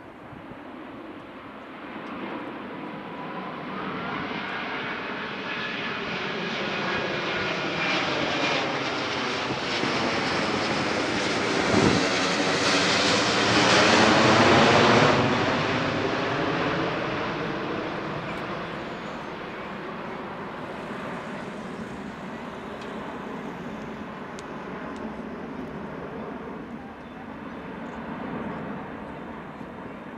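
Airbus A380 four-engined airliner flying past in a display. Its engines build to a peak as it passes overhead about halfway through, with a sweeping, phasing sound, then fade as it flies away.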